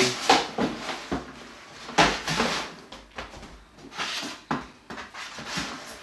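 Handling noises in a clear plastic tub: metal reptile tongs and a snake hook knock and scrape against the plastic while a Gila monster is moved inside it. There are a few sharp knocks, the loudest near the start and about two seconds in, with softer scraping between.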